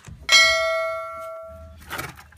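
A single sharp metal strike, then a clear bell-like ring that fades over about a second and a half, as a steel part or tool is hit; a smaller knock follows near the end.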